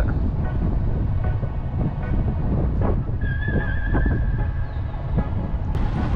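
Boat motor running as the boat cruises slowly, with wind rumbling on the microphone. A steady high whistle-like tone sounds for about a second and a half around the middle.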